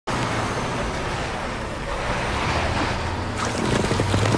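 Steady rush of wind in a snowstorm over the low rumble of a heavy truck's engine. Near the end, crackling as the truck's tyre crunches through ice.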